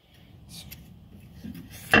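Metal tools and brake caliper parts being handled: faint rubbing and light clinks, then one sharp metallic clink near the end.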